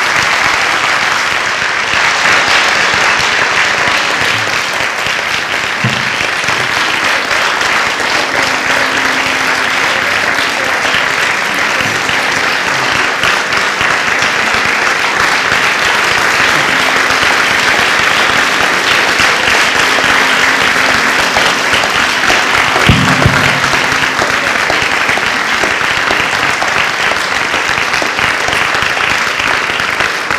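A large auditorium audience clapping in a standing ovation, a steady, dense applause throughout, with a short low thump about three-quarters of the way through.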